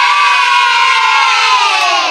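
A group of children cheering and shouting together in one long, loud, sustained cheer, the pitch sagging slightly.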